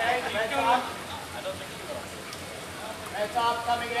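Indistinct voices of people talking, heard briefly at the start and again near the end, over a faint steady background noise.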